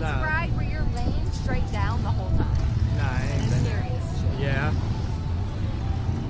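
Riders' voices laughing and exclaiming in short outbursts, over a steady low rumble.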